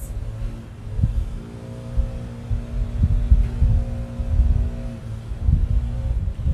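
Outdoor background noise: an uneven low rumble, with a steady droning motor hum from about one second in until near the end.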